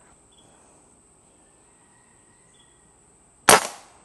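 A single shot from an Umarex Komplete NCR .22 air rifle, powered by a Nitro Air cartridge, about three and a half seconds in: one sharp crack that dies away within half a second.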